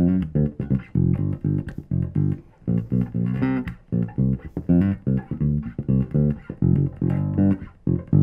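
Fender 75th Anniversary Jazz Bass played fingerstyle with the tone knob opened up, plucked near the bridge pickup: a quick line of short, separate notes, about four or five a second.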